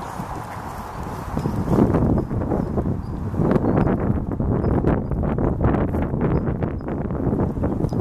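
Carp crowding in shallow water, splashing and slurping at the surface: a dense run of irregular wet smacks and sucking clicks that grows busier a few seconds in.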